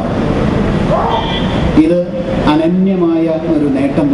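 A man making a speech in Malayalam into a microphone, amplified over a public-address system, with a steady background noise beneath the voice.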